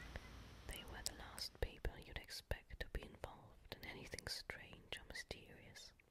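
A person whispering close to the microphone, with many sharp clicks scattered through the whisper.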